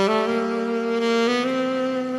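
A small women's choir singing a hymn in long, held notes, with piano accompaniment; the melody steps to a new note about every second.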